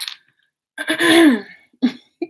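A woman clearing her throat: a longer, pitched clear about a second in and a short one near the end.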